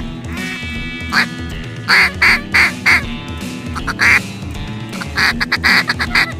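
Loud duck quacks in short runs, over background music: a single quack, then four in quick succession about two seconds in, another near four seconds, and a faster string of short quacks near the end.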